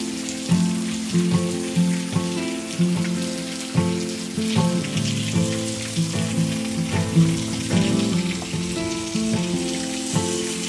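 Background music, a melody of notes changing about twice a second, over the steady hiss of heavy rain falling on pavement and grass.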